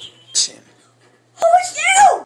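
A child's voice giving a loud, drawn-out wail about one and a half seconds in, high-pitched, climbing and then dropping sharply, after a short breathy hiss.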